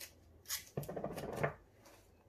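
Hand handling noise as a soft resin piece is pressed and taped into a stainless steel bowl: a sharp tick about half a second in, then about a second of rubbing and rustling.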